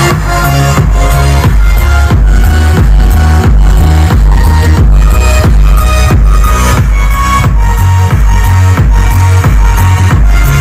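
Loud electronic dance music with a driving beat and heavy bass, played through handmade subwoofers and mid-range speakers driven by a four-channel Class AB car amplifier fed through its high-level (speaker-wire) input.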